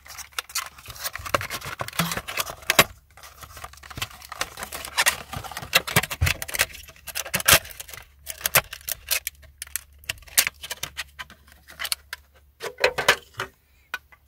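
Cardboard and clear plastic packaging being handled and opened: a rapid, irregular run of crinkles, clicks and taps as an OBD2 adapter is worked out of its box and plastic tray.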